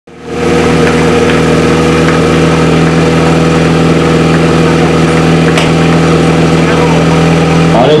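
Portable fire pump engine running steadily at a fast idle, its pitch briefly rising near the end.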